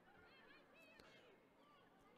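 Near silence: faint outdoor ambience with a few faint, short, high calls scattered through it.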